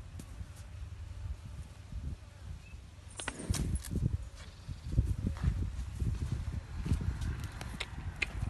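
A low rumble of wind on the microphone, with scattered short knocks and scuffs starting about three seconds in.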